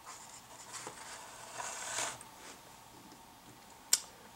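Faint rustling and scraping as a small wooden stand is slid out from under a wire loop loaded with craft fur, with one sharp click near the end.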